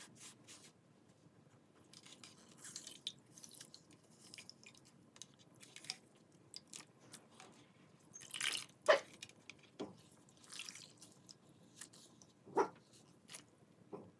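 Hands sloshing water and squeezing soaked green floral foam in a basin: irregular small drips, squishes and splashes, with two louder splashes, one past the middle and one near the end.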